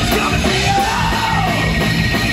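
Rock band playing live: electric guitars, bass and drums, with the singer yelling a held note that rises and falls about halfway through.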